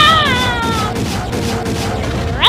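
A high-pitched, meow-like wailing cry that rises sharply and then slides slowly down, dying away about a second in.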